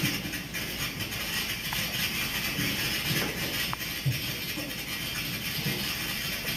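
Film soundtrack music played over an auditorium's loudspeakers and picked up through the room, over a steady hiss.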